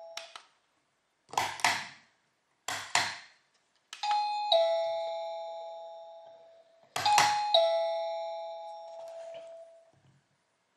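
Wireless doorbell chime unit sounding a two-note ding-dong, a higher note then a lower one that rings out and fades, played twice about three seconds apart. Before that come two short double bursts of a harsher, noisier sound.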